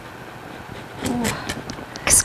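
Pizza cutter wheel rolling through the crust of a freshly baked pan pizza on a plastic cutting board, with a few short crackles and clicks in the second half as the crisp crust gives way.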